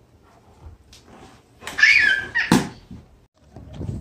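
A young child's short high-pitched squeal, bending up and down for about half a second around the middle, followed at once by a sharp thump.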